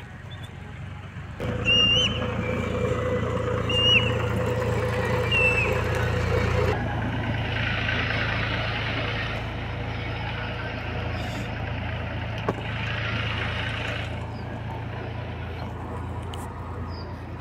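A motor vehicle's engine running close by, a steady low hum that sets in about a second and a half in and eases a little after the halfway point, with a few short high chirps in the first half.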